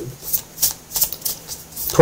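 A deck of tarot cards being shuffled by hand: a quick series of short, crisp card rustles, about six in two seconds.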